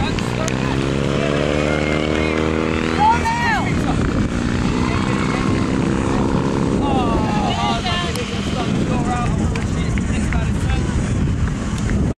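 A steady engine drone at a level pitch sets in about half a second in and is loudest for about three seconds, then carries on fainter, under voices calling out on the field. There is a loud shout about three seconds in.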